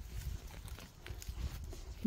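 Faint crackling and rustling of dry twigs and moss being handled on a forest floor, a few light snaps scattered through, over a steady low rumble.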